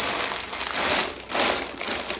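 Plastic poly mailer bag crinkling as it is set down and pressed flat by hand, in two stretches with a short pause between.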